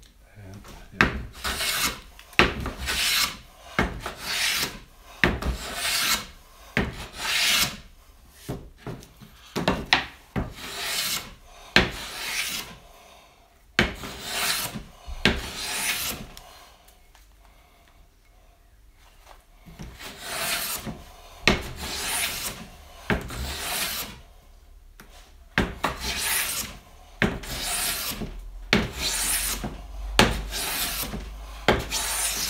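Veritas low-angle jack plane shaving a mahogany board by hand: a run of rasping strokes, roughly one a second, with a pause of a few seconds just past the middle before the strokes resume.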